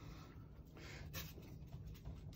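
Faint scratchy handling of a piece of rigid foam insulation board, with a few soft ticks, over a low steady hum.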